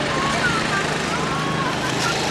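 Outdoor ambience: a steady noisy rush with a low hum, and several short high-pitched arching calls over it.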